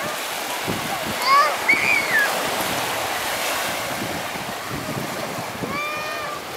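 Small waves washing onto a sandy beach, a steady surf hiss. A child's high voice calls out about a second in and again near the end.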